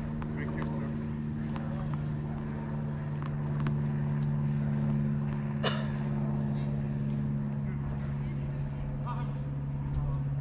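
A steady low motor hum, like an engine running, with a few scattered sharp knocks, the loudest a little past halfway through.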